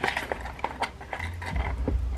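Light clicks and rustling from a small wallet on a strap being handled and unwrapped, with a low rumble of handling noise from a little past a second in.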